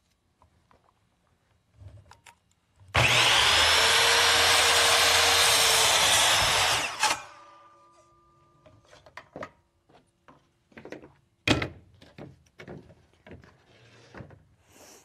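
Electric miter saw spinning up and cutting through a wooden board for about four seconds, its motor then winding down after the cut. Several scattered knocks and clicks follow, one sharper than the rest.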